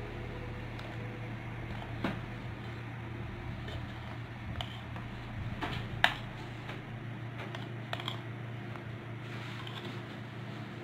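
A metal spoon scooping powdered sugar over cookies on a ceramic plate, with a few light clicks of spoon on plate, the sharpest about six seconds in, over a steady low hum.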